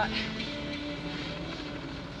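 Steady drone of a hovering helicopter, with a soft held low music note underneath.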